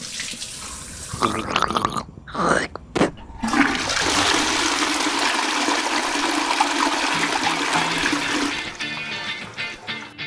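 A toilet flushing: a steady rush of water that starts a few seconds in, runs about five seconds and then tails off.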